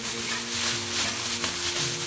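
Thin plastic bag crinkling and rubbing close to the microphone, a dense run of rustling crackles.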